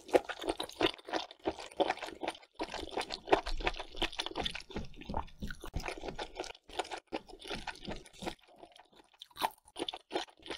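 Close-miked chewing of sauce-coated mushrooms: a quick, irregular run of crunchy, wet bites and mouth clicks, easing off for a moment near the end before one more bite.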